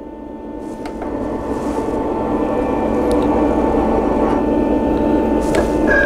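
Roland GX-24 vinyl cutter's servo-driven tool carriage whirring as it travels along the rail across the loaded material, swelling over the first few seconds and then holding steady, with a few light clicks. A higher whine joins near the end.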